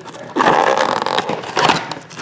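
Loud scraping and rustling noise, starting suddenly about a third of a second in and lasting about a second and a half, with a few sharp clicks in it.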